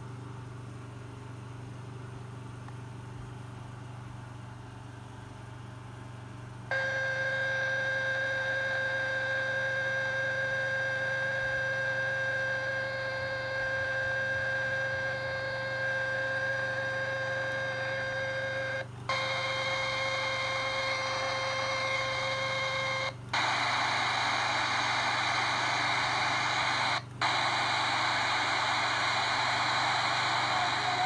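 Sony clock radio's speaker hissing with untuned static, steady whistling tones laid over the noise. It comes on suddenly about a quarter of the way in, cuts out briefly three times as the band and tuning are changed, and the last stretch is plainer hiss.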